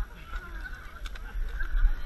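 Thick mud squelching and sucking as people crawl through a deep mud pit, over a low steady rumble of handling noise close to the camera.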